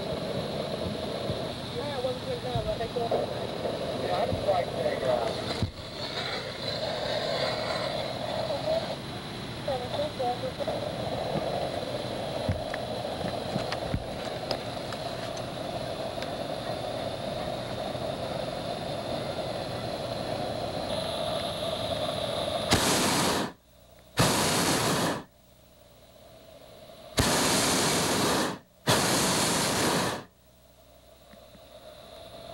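Hot air balloon propane burner firing in four blasts of about a second or so each near the end, loud and full-throated with sharp on and off edges. Before them, a steady low background with faint voices.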